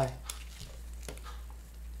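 A few faint, short clicks and taps of hard plastic radio-control kit parts and a screwdriver being handled, over a steady low hum.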